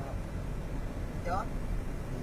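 Steady low rumble of a car's engine and tyres heard from inside the cabin while driving along a road.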